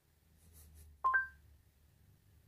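Google Assistant's short two-note rising chime over the car's speakers about a second in, preceded by a faint click, against a faint low hum.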